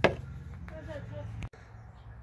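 A single sharp clack of a tool or part knocking against the chainsaw's plastic case during disassembly, over a steady low hum that cuts off abruptly about one and a half seconds in.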